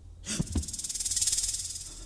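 Horror-film scare sound effect: a sudden low thud, then a loud rattling hiss that swells and fades away over about a second and a half.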